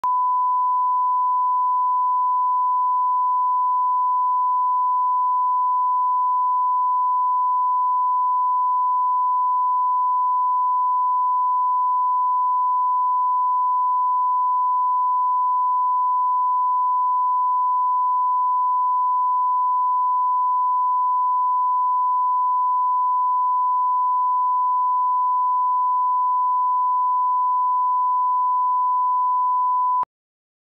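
Steady 1 kHz line-up test tone, one pure unchanging pitch, laid under broadcast colour bars at about −20 dB full scale as the reference for setting audio levels; it stops abruptly at the end.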